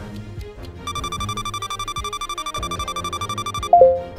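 Game music with a countdown timer's rapid, steady electronic beeping, like an alarm clock, starting about a second in. Near the end the beeping stops with a short, loud falling chime as the timer runs out.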